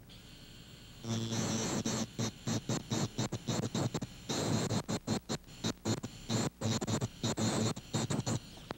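Dental handpiece spinning an abrasive disc, grinding down a bisque-baked porcelain crown to reshape its contour. The scratchy grinding over a steady motor whine starts about a second in and cuts in and out many times.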